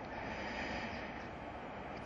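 A pause in a man's speech, filled by a steady background hiss with no distinct event.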